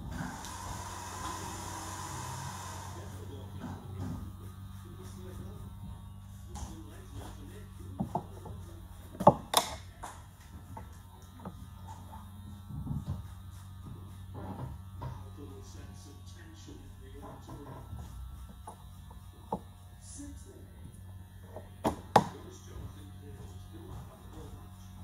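Barbershop room sound: a steady low electrical hum under faint background voices and music, with a hiss lasting about three seconds at the start and a few sharp knocks, loudest about nine and twenty-two seconds in.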